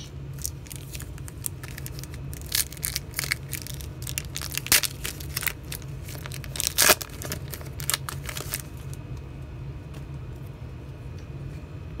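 A foil pack of football trading cards being torn open and its wrapper crinkled: a run of crackling rips and rustles, the sharpest about seven seconds in. The last few seconds are quieter, leaving only a steady low hum.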